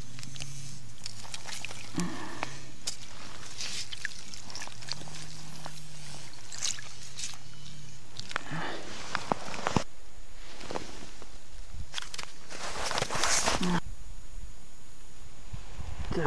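Handling noise of ice fishing: rustling of clothing and scraping on snow and ice, with several short louder swishes, the loudest about two-thirds of the way through, over a faint low hum.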